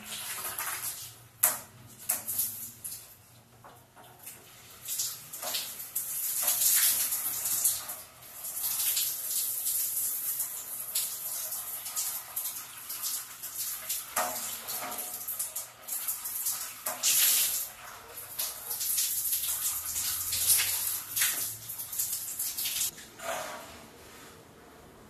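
Handheld shower head spraying water onto a glass shower enclosure to rinse it, the hiss of the spray swelling and fading as it is swept over the glass. It stops shortly before the end.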